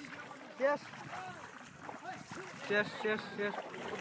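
Quiet voices talking in the background, with water sloshing and splashing as hands work in the muddy water of a flooded rice paddy.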